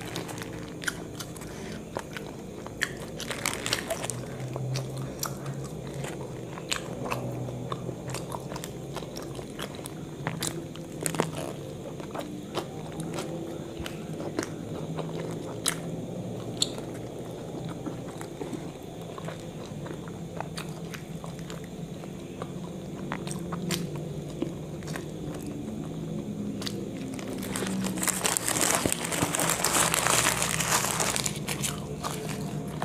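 Close-miked eating of a burger: bites and steady chewing with many small wet mouth clicks. Near the end, the paper burger wrapper crinkles loudly in the hands.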